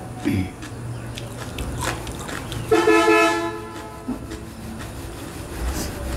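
A vehicle horn honks once, a steady blast lasting about a second near the middle.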